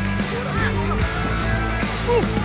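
Background music with steady low held notes and short sliding high tones over them.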